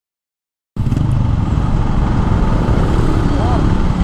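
Dead silence, then after about three-quarters of a second a sudden cut in to the steady low running of a 2020 Yamaha NMAX scooter's single-cylinder engine, fitted with a Speedtuner CVT set, in street traffic.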